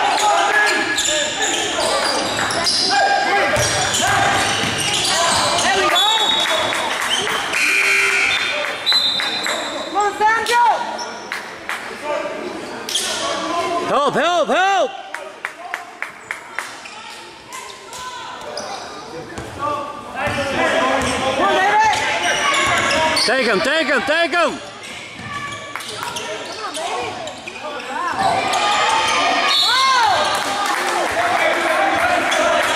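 Basketball game sounds echoing in a large gymnasium: a ball bouncing on a hardwood court, sneakers squeaking on the floor, and players and spectators calling out. About halfway through, the ball is dribbled in a quick, even run while the play is briefly quieter.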